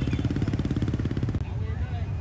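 A motorbike engine running close by in slow traffic, a steady, fast, even pulsing. It cuts off abruptly about one and a half seconds in, giving way to softer crowd noise.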